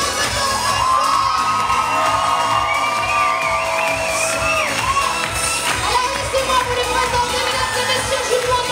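Music playing while a crowd of young voices cheers and shouts along.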